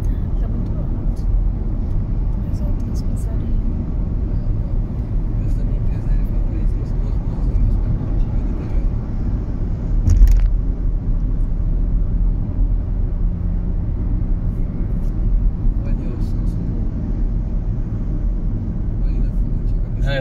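Steady low road rumble of a car driving at highway speed, heard from inside the cabin, with one short thump about halfway through.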